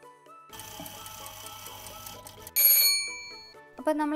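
Alarm-clock sound effect for an on-screen time-lapse clock: about two seconds of fast ticking over a hiss, then a sudden, bright bell-like ring that is the loudest sound and fades within a second. Soft background music plays under it.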